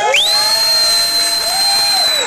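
An audience member's loud, shrill whistle of approval for the band, sliding up into one long high note held for about two seconds, with whooping shouts underneath.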